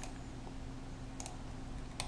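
A few light computer mouse clicks, about a second in and near the end, over a steady low hum.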